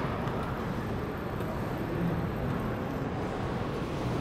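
A steady low rumble of background noise, with no distinct event in it.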